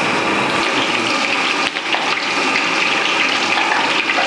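Strands of besan (gram-flour) dough pressed from a namkeen extruder frying in a kadhai of hot oil. The oil sizzles and bubbles in a loud, steady hiss.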